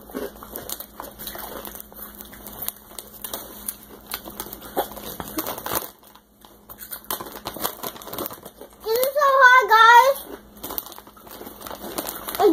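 Crinkling of a Xxtra Hot Cheetos bag and crunching of the Cheetos being eaten, a run of small crackles through the first half. Near the end a child's voice makes a short sound that wavers in pitch.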